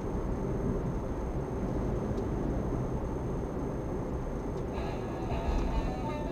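Steady road and engine noise inside a moving car's cabin. Music from the car radio starts near the end.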